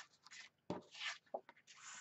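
Black cardstock sheets sliding and brushing against each other and the scoring board as they are picked up and laid down: a few faint, short paper scrapes, with a longer swish near the end.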